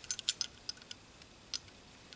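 Metal Beyblade discs clinking and tapping against each other as they are handled. There is a quick run of clinks at first, then a few scattered light ticks.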